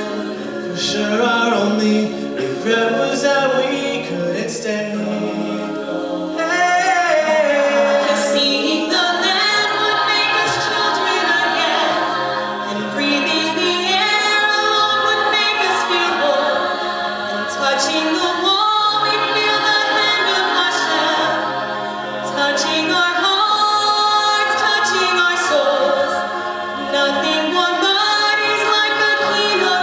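Collegiate a cappella group singing live: a lead voice over close-harmony backing vocals and a sung bass line, with no instruments. A woman sings the lead near the end.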